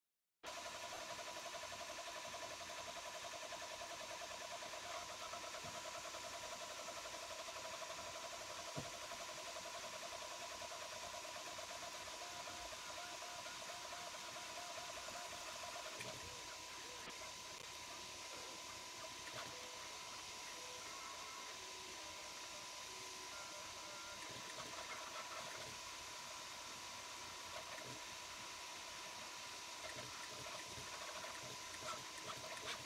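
Prusa Mini 3D printer printing, faint: the stepper motors whine as the print head moves, over a steady high hum. The motor pattern changes about halfway through.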